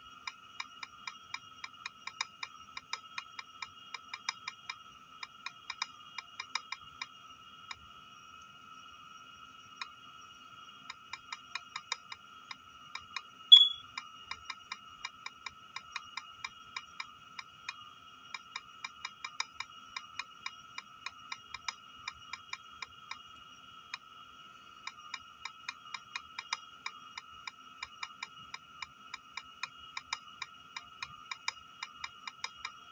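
Key-press clicks of a tablet's on-screen keyboard as a message is typed, a few taps a second with short pauses, over a faint steady high whine. A single much louder short high beep sounds near the middle.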